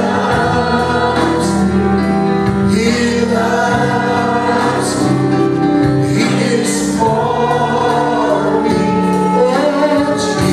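Live church praise team of male and female singers singing a worship song together with band backing, the voices holding long notes.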